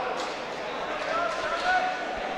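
Indistinct crowd chatter in a large hall, with a voice calling out faintly in the second half.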